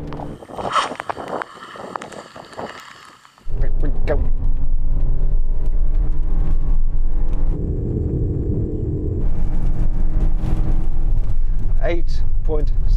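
Lexus LM 350h's 2.5-litre four-cylinder hybrid engine under a full-throttle launch, heard inside the cabin: a lighter rev first, then about three and a half seconds in a sudden jump to a loud, steady high-revving drone with road noise, which dips briefly in the middle before picking up again. The engine holds near-constant revs as speed builds, and it is noisy, not a nice noise.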